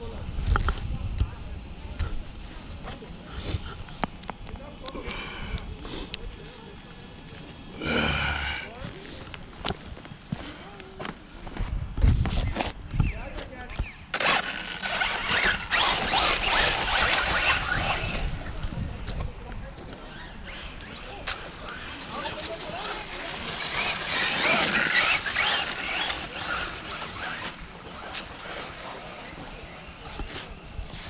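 Electric RC short-course truck with a Max 8 brushless ESC and motor combo being driven over dirt and grass. Its motor and tyre noise comes in two stretches of a few seconds each, the first about halfway through and the second later on, with scattered knocks between them.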